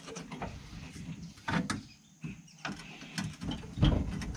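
Metal clunks and rattling from the subframe of a stripped 1968 Dodge Charger being worked loose by hand above a floor jack: a few separate knocks, the loudest near the end.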